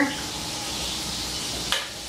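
Pancake batter sizzling on a hot, oiled griddle as it is ladled on: a steady, soft hiss. A single light click near the end.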